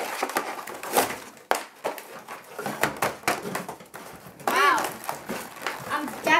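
Toy packaging being torn open: cardboard ripped and plastic wrapping crinkled in irregular rustles and snaps. A brief voice comes in about four and a half seconds in.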